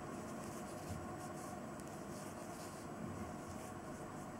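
Quiet room tone: a faint, steady hiss with no distinct sounds from the crochet work.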